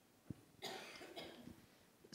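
A single soft thump, then a person coughing briefly into a handheld microphone, starting about half a second in and lasting under a second.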